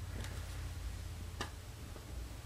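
Low steady hum of room noise with a few faint light clicks near the start and one sharper click about a second and a half in, from a small composition baby doll being handled and set down.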